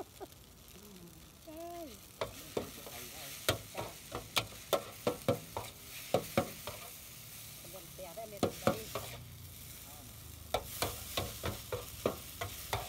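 Short noodles with egg, beef and vegetables stir-frying in a hot pan: a steady sizzle under quick runs of sharp knocks and scrapes from the spatula against the pan, with brief pauses between runs.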